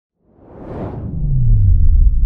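Whoosh sound effect of an intro logo sting: a rushing swell that peaks about a second in, then a deep rumble with a low tone sliding downward, building in loudness toward the end.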